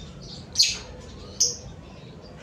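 Lovebird giving two short, high-pitched calls about a second apart.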